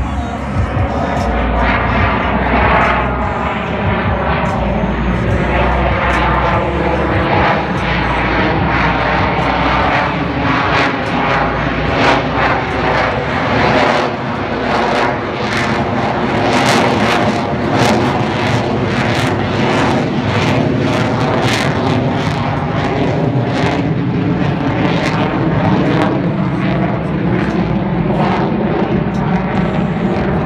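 F-22 Raptor's twin Pratt & Whitney F119 turbofans during a slow, high-angle-of-attack pass: loud jet noise that sweeps in pitch as the jet passes, with a crackling rasp through the middle of the pass.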